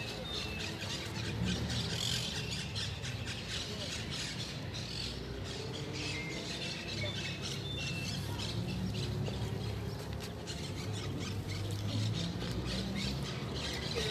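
Birds calling from the trees in short, repeated high calls, over indistinct chatter of a small group of people.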